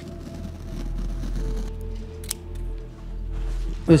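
Scissors cutting through a rubber anti-slip rug underlay, over soft background music with steady held notes.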